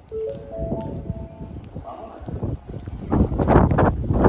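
A short chime of four notes stepping upward in pitch. About three seconds in, a loud rushing noise begins.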